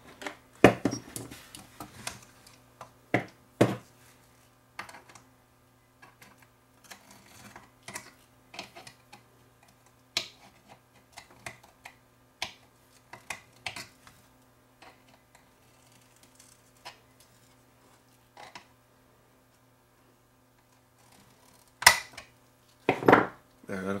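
Scattered clicks, taps and light metallic clinks from hands and a tool working on a subwoofer amplifier's metal back plate while a replacement switch is fitted in place, with a sharp knock a couple of seconds before the end. A faint steady low hum runs underneath.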